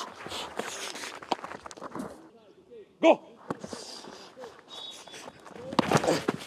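Goalkeepers diving from their knees onto grass, their bodies landing with dull thuds and scuffs on the turf.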